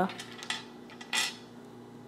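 Cuisenaire rods being handled on a tabletop: a light click about half a second in and a brief clatter just past a second in as the rods knock together.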